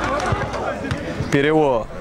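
Open-air minifootball match ambience: a steady wash of crowd and pitch noise with a few soft thumps, then a man's commentary voice calling a name about a second in.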